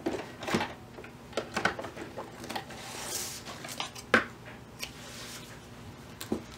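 Handling sounds as a fabric bib is taken out of a sewing machine: scattered light clicks and knocks, with a brief rustle about three seconds in.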